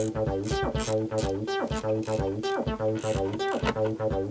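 A 303-style monophonic synth bass line from an Ambika synthesizer, a looped step pattern of short, plucky pitched notes at about three a second, sequenced by a MIDIbox Sequencer V4.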